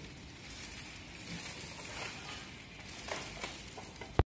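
Faint steady hiss of room noise, with a slight rustle about three seconds in.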